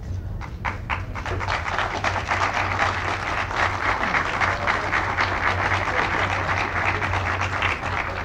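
Audience applause: a few scattered claps, then dense clapping that builds within the first two seconds and holds steady. A low steady hum runs underneath.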